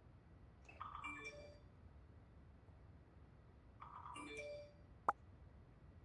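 Two short, faint electronic chimes about three seconds apart, each a few quick stepped notes, then a single sharp click.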